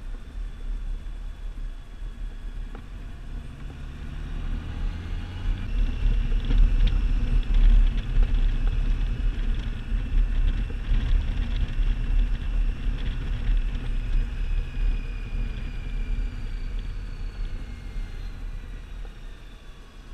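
Honda Gold Wing touring motorcycle riding along a winding road: a steady engine and road rumble that grows louder about a third of the way in and eases off toward the end.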